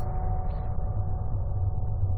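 A steady low rumble with a few faint held tones above it.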